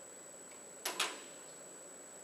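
Two sharp clicks a fraction of a second apart, just before the middle, over a faint steady high-pitched whine.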